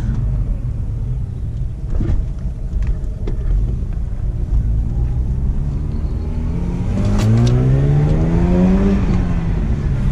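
Mazda RX-8's two-rotor rotary engine heard from inside the cabin, running smoothly at low speed, then pulling harder about seven seconds in with its note rising, and easing off near the end. It sounds better to the owner after the air-injection pump was replaced to cure a cold-start misfire.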